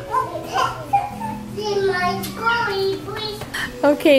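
A young child's high voice chattering and babbling without clear words.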